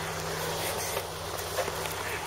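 An off-road Jeep's engine running steadily at low revs, a low hum under a steady hiss.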